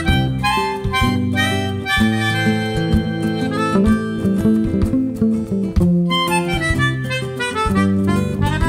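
Instrumental break: a melodica plays a reedy melody line over a Mini Martin acoustic guitar and the low notes of a U-bass bass ukulele.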